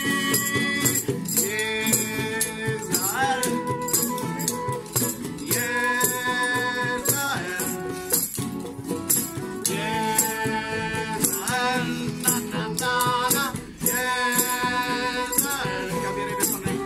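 Small acoustic band playing live: a flute carries the melody in held, wavering notes over acoustic guitars and mandolin, with a shaker rattling a steady beat throughout.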